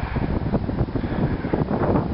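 Wind rumbling and buffeting on the camera microphone, an uneven, gusty low rumble.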